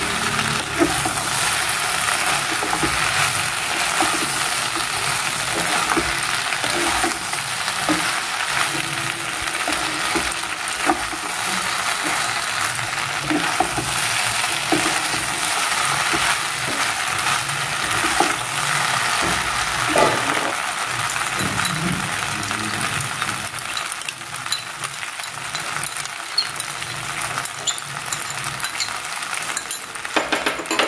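Pasta with vegetables and scrambled egg sizzling in a nonstick frying pan as it is stirred and tossed with a spatula, with frequent small scrapes and clicks of the spatula against the pan. The sizzle eases a little near the end.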